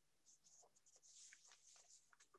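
Very faint rustling of paper being handled: a run of soft, scratchy rustles that starts about a quarter second in.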